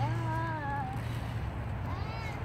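A short high voice call in the first second, its pitch rising and then falling away, with a second brief call beginning near the end, over outdoor background noise.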